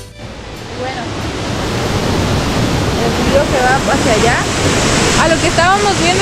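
Small waterfall pouring into a pool: a steady rush of falling and splashing water that swells over the first second or two. Voices talk faintly over it from about three seconds in.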